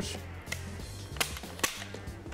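Ruger Red Label over-under shotgun's mechanical trigger mechanism clicking as it is dry-fired: two sharp metallic clicks about half a second apart, after a fainter click, over soft background music.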